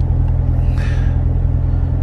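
Low, steady rumble of an idling car engine heard inside the cabin.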